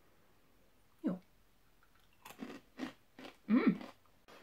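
A person biting into and chewing a crunchy oat-and-rice honey granola cluster, with a run of short crunches in the second half.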